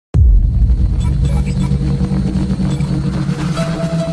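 Electronic logo-intro music that opens suddenly on a loud deep rumble, with held synth tones coming in near the end.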